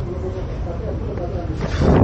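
Street noise: a steady low rumble with faint voices, and a loud swell near the end.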